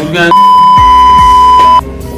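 A loud, steady, single-pitched beep tone of about a second and a half, laid over speech as a censor bleep, cutting off sharply near the end. Background music with a beat runs underneath.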